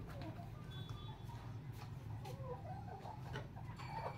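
Domestic chickens clucking faintly, with a few light clicks and knocks in between.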